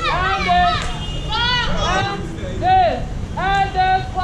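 Children's voices calling out in short, high-pitched, rising-and-falling phrases, one after another.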